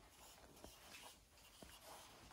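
Faint pencil strokes rubbing on sketchbook paper, with two light ticks.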